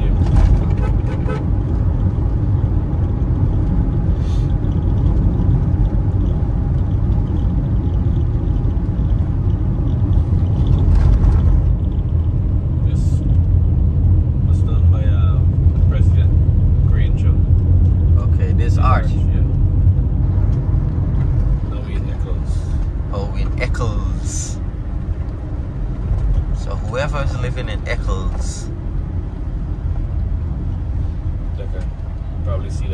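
Road and engine noise inside a moving car: a steady low rumble that eases a little in the last third, with faint voices now and then.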